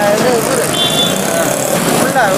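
Busy street noise: steady vehicle engine and traffic sound mixed with nearby voices, and a brief high tone about a second in.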